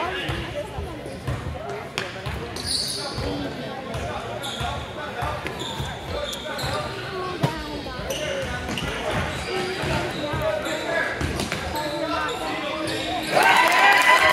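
A basketball being dribbled on a gym floor, with sneakers squeaking, under spectators' chatter in a large echoing hall. Near the end the crowd suddenly gets louder with shouting.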